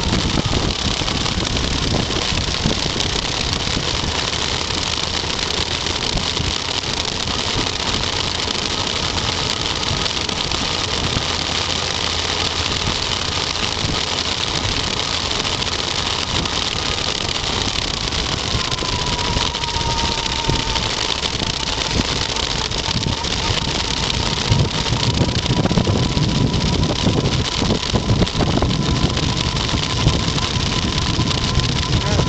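Motorcycle riding heard from on board: a steady engine note with a thin whine that dips in pitch about twenty seconds in, under a constant rush of wind and road noise. The low rumble of the wind grows heavier near the end.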